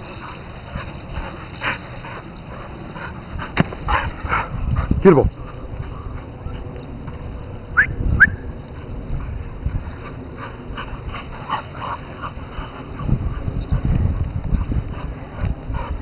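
Dogs playing on a lawn, giving a few short whines and yips: a falling whine about five seconds in and two quick high yips about eight seconds in. Low rustling noise near the end.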